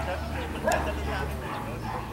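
A dog barking, over a low steady hum that drops away about a second and a half in.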